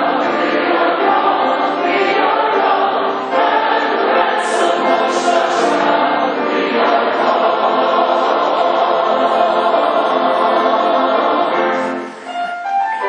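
A large mixed-voice SATB choir singing a hymn arrangement in parts, with piano accompaniment. Right at the end the singing stops and the piano carries on alone.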